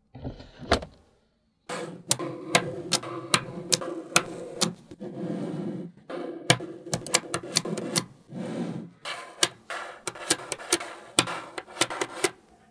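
Small magnetic balls clicking and snapping together as sheets of them are handled, laid down and pressed into place: sharp irregular clicks, with denser rattling stretches where many balls shift at once.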